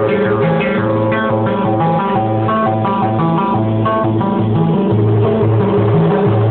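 Band music without singing: a plucked guitar playing a run of short melodic notes over a pulsing bass line, steady and loud, with a dull, muffled top end.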